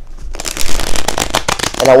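Tarot cards being shuffled by hand: a rapid run of crisp card flicks beginning about half a second in and lasting about a second and a half, just as the reader changes to his Crystal Visions tarot deck.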